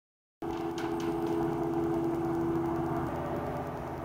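A steady mechanical hum with one strong held tone, which fades out near the end. It cuts in from dead silence just after the start.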